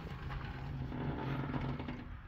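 2003 Honda Civic's 1.7-litre four-cylinder engine idling with the hood open, a steady hum.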